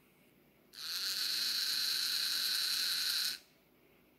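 REV Robotics DC motor turning a wheel at low power, a steady whine that starts under a second in and cuts off suddenly about two and a half seconds later, as the motor reaches its encoder target position and stops.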